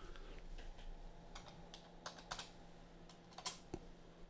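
Faint, irregular keystrokes on a computer keyboard as a value is typed in, a dozen or so scattered taps.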